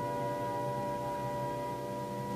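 Orchestra holding a soft sustained chord, many notes ringing together without change in pitch.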